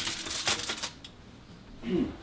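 Aluminium foil crinkling and scraping over the wire bars of an oven rack as a pizza on the foil is slid in. The crackly rustle lasts about the first second, then dies away.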